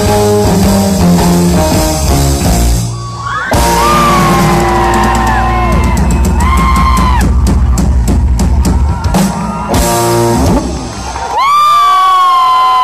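Live rock band, with electric guitars, bass and drum kit, playing the closing bars of a song, with a run of quick, even drum hits in the middle and a final flourish. Just before the end the crowd starts cheering and whooping.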